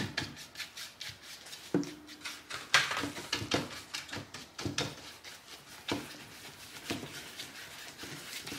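Wide flat paintbrush scrubbing blue paint onto a stretched canvas: short brush strokes in quick, irregular succession.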